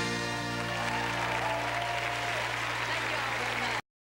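The last chord of a country band ringing out, held, while audience applause and cheering swell over it. The sound cuts off abruptly shortly before the end.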